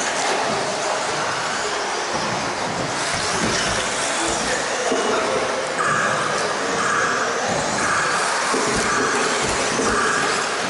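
Electric two-wheel-drive stock-class RC buggies racing on a carpet track, with the whine of their motors and gears and the noise of their tyres. From about six seconds in, a high whine pulses on and off about once a second.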